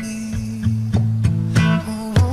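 Acoustic pop cover song in an instrumental stretch: plucked guitar over bass, with notes struck about every third of a second and no voice.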